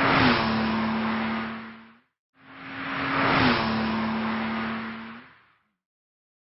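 Sound effect of a car driving past, played twice in identical copies. Each pass swells up, peaks with the engine note dropping in pitch as the car goes by, then fades away. The first pass dies out about two seconds in, and the second rises soon after and fades away near the end.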